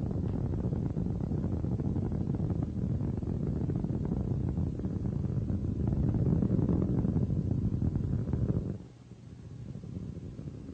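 Space Shuttle Atlantis's solid rocket boosters and main engines during ascent: a low, crackling rumble that drops away sharply about nine seconds in.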